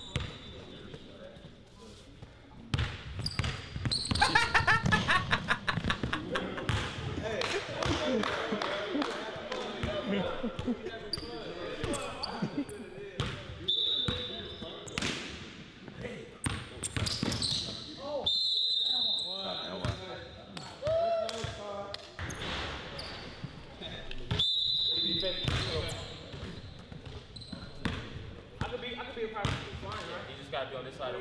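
A basketball being dribbled on a hardwood gym court, bouncing in quick runs, with voices around it.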